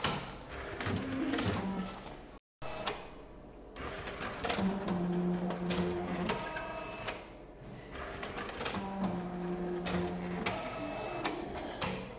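Bank statement printer at work: rapid mechanical clicking of the print mechanism, with two runs of a steady motor hum of about a second and a half each, one near the middle and one later on.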